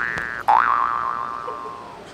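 Cartoon 'boing' sound effect played twice: a rising twangy glide, a short click, then a second glide about half a second in that rises and slowly dies away.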